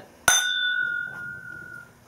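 Two glass whisky nosing glasses clinked together in a toast: one sharp clink, then a clear ring that dies away over about a second and a half.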